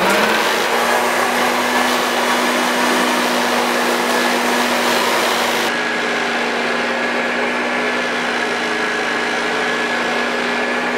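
Vacuum cleaner motor starting up and then running with a steady hum and rushing air. A little past halfway the highest part of the hiss drops away and it gets slightly quieter.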